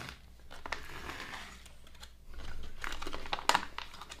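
A plastic food pouch crinkling as a hand handles it and reaches inside, quiet at first, then a run of sharp crackles in the second half.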